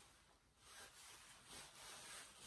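Near silence: room tone, with faint soft swishes of a fine grooming rake drawn through an Airedale Terrier's wiry coat, pulling out undercoat.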